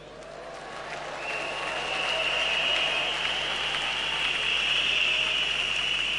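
Large congregation applauding, swelling over the first two seconds and then holding steady.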